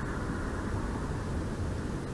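Steady low rumbling background noise with no distinct events, picked up by an outdoor nest-cam microphone.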